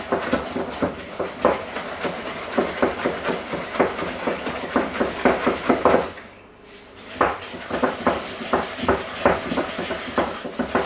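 Metal balloon whisk beating a butter, sugar and egg mixture in a glass bowl, its wires clicking against the glass in quick strokes. The whisking breaks off for about a second a little past halfway, then starts again.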